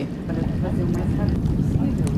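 A steady low rumble of outdoor noise, with faint voices in the background.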